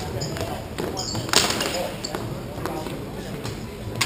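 Hockey sticks clacking against each other and on the hard rink floor during play, with a loud, sharp shot or stick strike about a second and a half in and another near the end.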